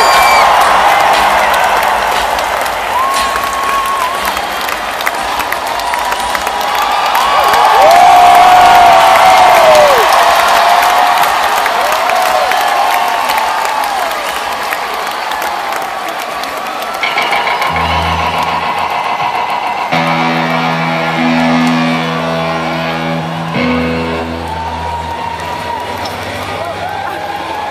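Arena crowd cheering and whooping loudly, the cheer peaking about a third of the way in. In the second half a rock band comes in with held, amplified guitar and bass chords that change every couple of seconds.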